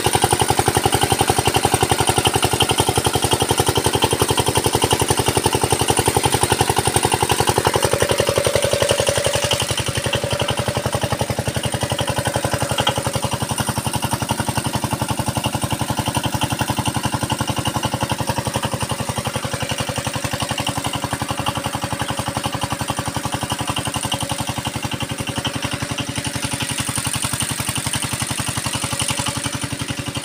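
Small stationary engine running steadily with a fast, even beat as it drives an irrigation water pump, with water gushing from the pump outlet into a tank. It is a little quieter from about ten seconds in.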